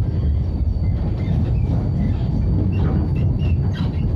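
Siemens ULF A1 low-floor tram running on street track, heard from inside: a steady low rumble with a faint steady high whine, and a few short high squeaks near the end.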